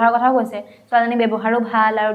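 Speech only: a woman talking, with a short pause a little under a second in.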